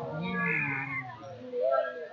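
People shouting in a gym hall. One drawn-out yell lasts about a second, then more calling follows over background chatter.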